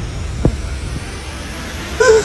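A steady low rumbling noise, like an engine or aircraft, with a quick falling tone about half a second in.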